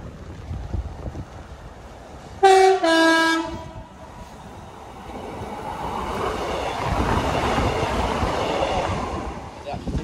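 Class 150 diesel multiple unit sounding its two-tone horn about two and a half seconds in, a short high note then a longer low one. It then runs past with engine and wheel-on-rail noise that swells and fades away near the end.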